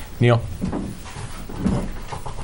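A man says one short word, then quieter room sounds of people moving about: shuffling and faint knocks as one speaker leaves the podium and another comes up.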